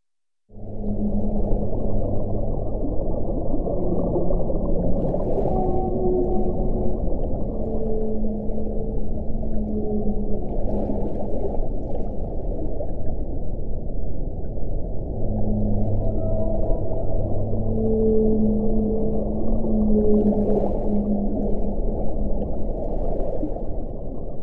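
Whale song over a dense, muffled underwater rumble: long held moans at several pitches, a second or two each, overlapping one another, starting suddenly about half a second in.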